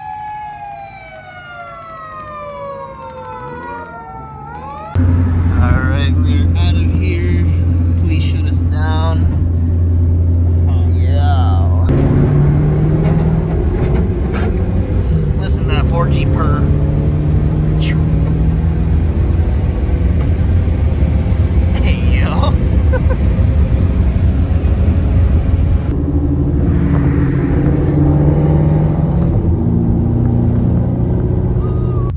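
A siren's wail falling steadily in pitch for the first few seconds. Then, after a sudden jump in level, the loud, steady drone of a Mitsubishi Lancer Evolution VI's engine and road noise heard from inside the cabin at highway speed, with voices now and then.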